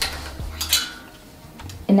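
Clothes hangers clinking against the metal rail of a clothing rack as a dress is pushed in among the others: a few sharp clinks, the loudest about two-thirds of a second in with a short metallic ring.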